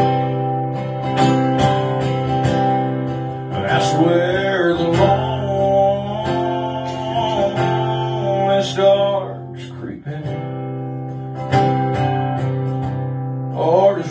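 Acoustic guitar strumming chords in a song's instrumental break, with a wavering, pitch-bending melody line over it from about four to nine seconds in.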